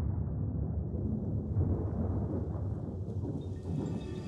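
Low, rolling rumble of thunder, heavy in the bass, as the recorded opening of a song; tuneful music comes in right at the end.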